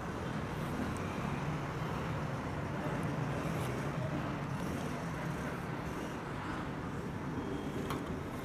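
Steady low background hum and noise, with no distinct event standing out.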